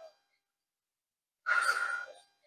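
Near silence, then about a second and a half in, a woman's short, breathy exhale, like a sigh, from the effort of a squat.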